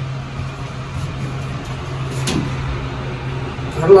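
Westinghouse high-speed traction elevator car in motion, heard from inside the cab: a steady low hum with an even rushing noise, and one short tick about two seconds in.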